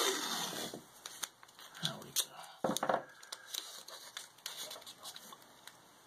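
Blue painter's masking tape being pulled off its roll and pressed onto a chalkboard's wooden frame: a peeling rasp at the start, then scattered crinkles, small clicks and rustles, one sharper crack a little under three seconds in.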